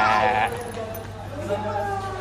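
A young boy's loud, high-pitched shout lasting about half a second, followed by quieter voice sounds.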